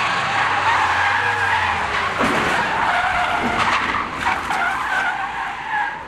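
Car tyres squealing as cars slide and spin on tarmac: a continuous, loud squeal that wavers in pitch. A low engine note runs under it for the first two seconds.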